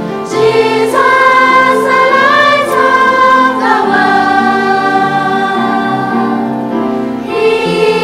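A choir singing a hymn in held, sustained notes, with a brief breath between phrases near the end.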